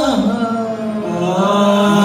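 Male qawwali singers holding a long sung note that slides down near the start, then stays steady with small ornamental turns.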